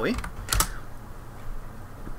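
Computer keyboard key press: one sharp double clack about half a second in, followed by a few faint clicks.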